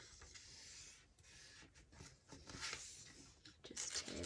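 A page of old book paper being folded over and creased by hand: a soft brushing of paper on paper for about a second, then scattered light crackles as the fold is pressed, with a sharper one near the end.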